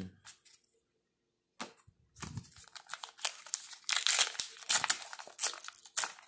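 A trading-card pack wrapper being torn open and crinkled by hand. There are a few faint clicks of cards being handled at first, then a dense crackle starts about two seconds in and is loudest around the middle.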